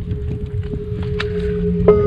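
Wind rumbling on the microphone, with a few scattered clicks and a faint steady tone underneath. Background music comes in near the end.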